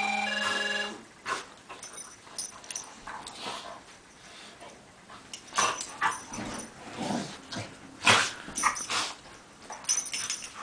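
A pit bull and a beagle mix play-wrestling: scattered scuffles, breaths and small growling noises, with the loudest bursts near the end. In the first second a short electronic tune of stepped tones plays over them.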